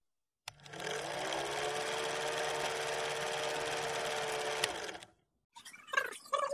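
Old film projector running sound effect: a steady mechanical clatter over a motor hum that rises slightly as it starts, then cuts off suddenly about five seconds in.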